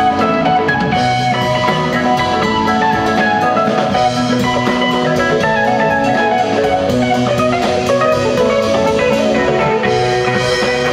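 Live rock band playing an instrumental passage: electric guitars and bass over a drum kit keeping a steady cymbal beat.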